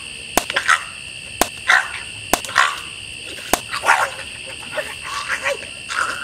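Night chorus of insects trilling steadily at a high pitch, with sharp clicks about once a second and short croaking frog calls.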